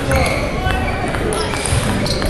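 A table tennis point ending: a few knocks and low thuds of the ball and players' feet on the wooden floor, with voices.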